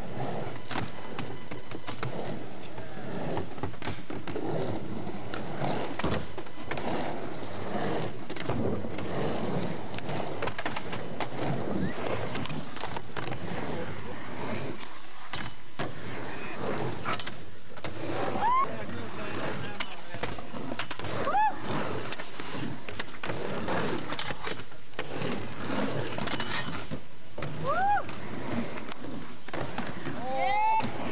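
Skateboards rolling on concrete, with the clack and knock of boards popping and landing, and voices in the background.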